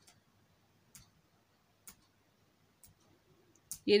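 Wooden spatula knocking lightly against a nonstick frying pan as pieces of chicken are stirred: four faint clicks, about one a second.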